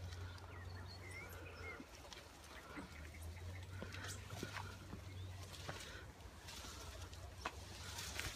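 Faint outdoor ambience: a low steady rumble with a few faint, short bird chirps and occasional light clicks.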